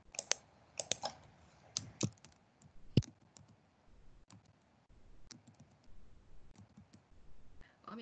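Faint, irregular computer keyboard keystrokes and mouse clicks as a password is typed in and a login is selected, with one sharper click about three seconds in.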